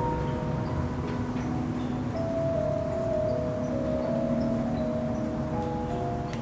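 Music played through a Divoom Ditoo portable Bluetooth speaker as a sound check: a slow melody of long held notes over a low, steady hiss.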